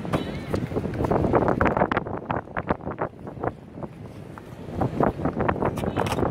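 Skateboard wheels rolling over concrete paving, a low rumble broken by many irregular clacks and knocks, with wind buffeting the microphone.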